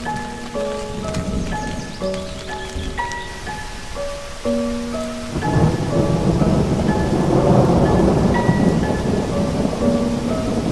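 Background music: a slow, simple melody of single notes over a rain sound, with a rumble of thunder swelling up about halfway through and easing off near the end.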